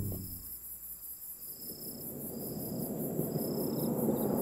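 Cricket trilling in repeated bursts of just under a second, as night-time ambience, with a low rumble swelling through the second half.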